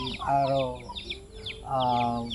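Chickens calling: two drawn-out wavering calls, with many short, high, falling chirps between them.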